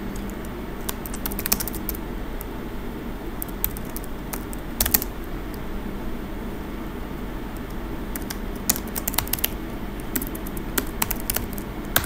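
Computer keyboard typing in a few short bursts of keystrokes with pauses between, over a steady low hum.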